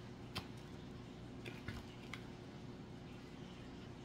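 Faint handling noise: a few soft clicks and rustles as foam craft petals and a hot glue gun are picked up and set down on the work table, over a faint steady hum.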